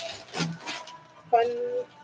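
Packing paper rustling and crinkling as it is pulled out of a cardboard box, faint and in short bits between words.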